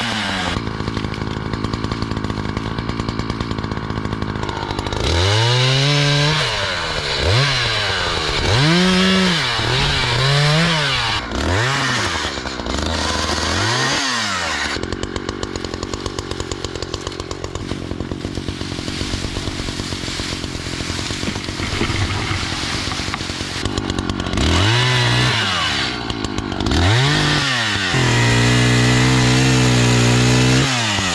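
Echo two-stroke chainsaw cutting oak limbs. The engine is revved up and let drop back again and again between short cuts, settles to a steadier low running for several seconds in the middle, and is held high near the end.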